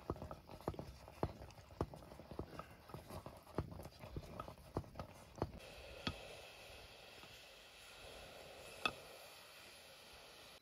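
A ladle stirring a blackened pot of food over a wood fire, knocking against the pot about twice a second, then two ringing metallic clinks in the second half.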